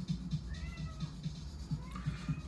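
A house cat meowing in the background: a faint drawn-out meow that rises and falls about half a second in, and another beginning near the end.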